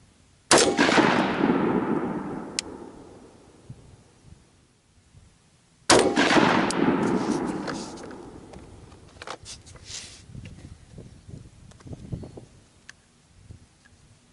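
Two rifle shots from a 16-inch AR-15 in .223 Wylde fitted with a Superlative Arms adjustable gas block, fired about five seconds apart to confirm the iron-sight zero. Each shot is sharp and loud, with a long rolling echo that fades over two or three seconds, and a few lighter clicks and handling sounds follow the second.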